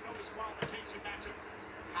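Faint voice talking in the background under low room noise, with a couple of soft knocks about half a second in.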